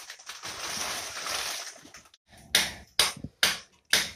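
A blade scraping on board or wall for about two seconds. After a short pause, sharp knocks start about halfway through and repeat about twice a second.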